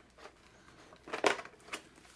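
Snap fasteners of a padded fabric helmet liner popping loose as it is pulled from the helmet shell: one sharp snap a little over a second in and a fainter click near the end, with light fabric rustling.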